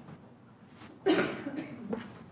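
A person coughing once, about a second in, a sudden loud burst that fades quickly.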